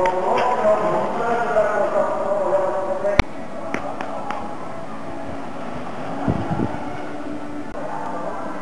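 Distant public-address announcer speech carrying over the race course, which breaks off with a sharp click about three seconds in. After that only a steady outdoor background hiss remains, with a few faint ticks.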